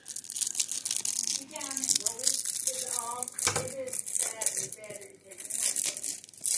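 Plastic card sleeve and rigid toploader crinkling and clicking as a trading card is slid in and handled. A faint voice talks in the background.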